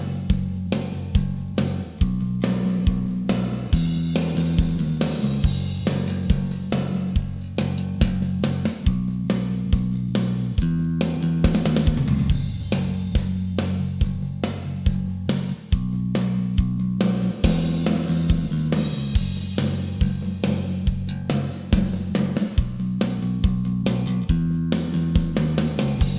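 An uptempo rock song playing back from a multitrack mix, with a drum kit keeping a steady beat under bass and guitars, and plate reverb from the Waves Abbey Road Reverb Plates plugin on it.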